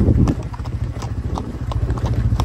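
Hooves clopping on a hard dry dirt road as cattle walk, in an irregular run of sharp knocks about three to four a second, over a low steady rumble.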